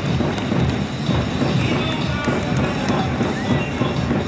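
Stadium PA music playing over the steady noise of a large ballpark crowd.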